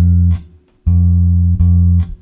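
Electric bass (a Fender Jazz Bass) playing the F at the 8th fret of the A string: a held note stops about half a second in, then after a short gap the note is plucked twice, about a second and a second and a half in.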